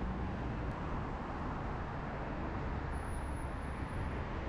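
Steady street traffic noise with a low rumble. A faint high-pitched whine comes in about three seconds in.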